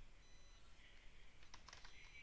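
Faint computer keyboard keystrokes, a few quick taps in the second half, over near silence: a short terminal command being typed.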